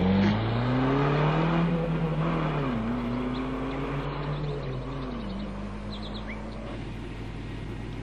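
Car engine accelerating through the gears, its pitch climbing and then dropping at a gear change twice, fading steadily as the car drives away.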